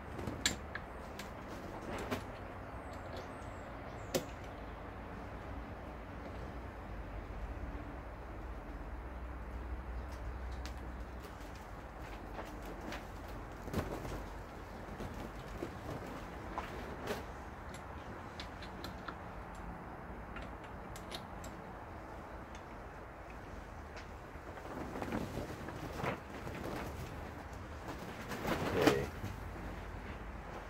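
Scattered metallic clicks and taps of chuck keys turning the jaw screws of a four-jaw lathe chuck, as opposing jaws are backed off and snugged to centre the work, over a steady low hum. The clicks come closer together and louder near the end.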